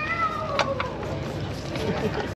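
A young child's high-pitched squeal that slides down in pitch over about a second, a meow-like cry.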